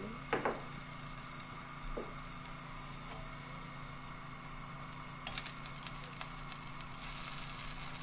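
Light clicks and taps of a bottle and utensils being handled at a frying pan while sauce ingredients are added: one knock about two seconds in, then a cluster of small clicks a little past halfway, over a steady low hum.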